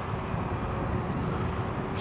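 Kukirin G3 Pro dual-motor electric scooter riding uphill under power: steady wind and road rumble with a faint steady whine.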